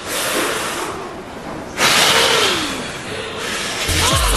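Exaggerated breathy blowing and puffing into a headset microphone, two long hissing breaths, the second louder, starting about two seconds in, as if drawing on and blowing out a cigarette.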